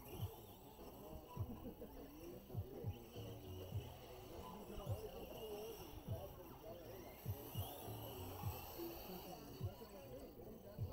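Faint, indistinct voices in the background, with scattered low thumps and a steady faint high hum underneath.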